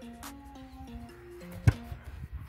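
Background music playing a stepped melody, with a single sharp thud near the end as a boot strikes a rugby ball in a box kick.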